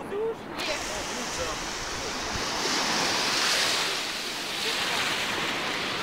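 Small waves breaking and washing up a sandy shore, a steady rush of surf that swells and eases; it comes in suddenly about half a second in.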